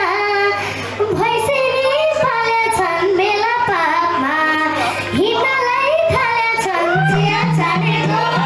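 A young girl singing a Nepali folk song live into a microphone through a PA, her voice sliding and ornamenting between notes. A steady low instrumental tone comes in near the end.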